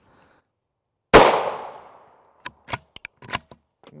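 A single .223 Remington rifle shot (55-grain FMJ) from a 22-inch-barrelled TC Compass bolt-action rifle about a second in, its report echoing away over about a second. Several short sharp clicks follow.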